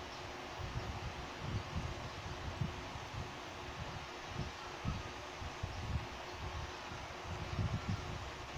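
Soft handling noise and rustling with uneven low bumps as the USB adapter and stand fitting are worked onto a heavy metal microphone by hand, over a faint steady hum.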